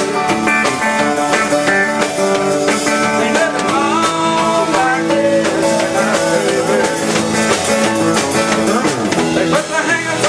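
A small live band playing an upbeat song: electric guitar over a drum kit, with a man's singing voice.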